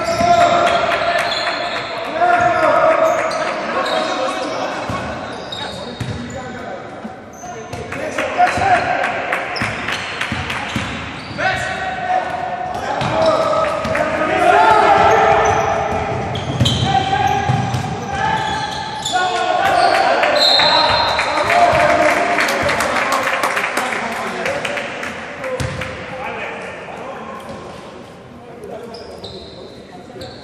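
Basketball being dribbled on a hardwood court, with repeated ball bounces and players' and coaches' shouts echoing in a large sports hall. The sound eases off over the last few seconds as play stops.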